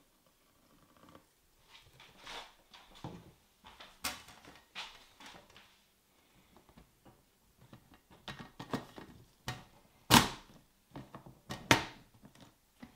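Plastic knocks and clicks as a clear plastic tub is handled and the Exo Terra Faunarium's plastic lid is fitted and clipped shut. A scattering of short, sharp clicks; the loudest comes a little after ten seconds in, with another just before the end.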